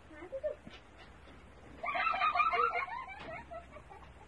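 A person laughing in a short, high-pitched, rapidly pulsing burst about halfway through.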